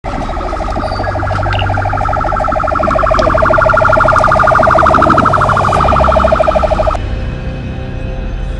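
Electronic police siren giving a rapid, steady pulsing two-pitched tone that grows louder, then cuts off suddenly about seven seconds in. Music follows near the end.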